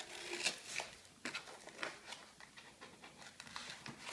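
Scissors cutting through brown kraft paper packaging: a series of short, irregular snips and paper rustles.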